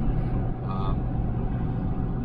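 Steady engine and road drone of a Ford F-250 Super Duty pickup cruising on the highway, heard from inside the cab, with a low even hum under it.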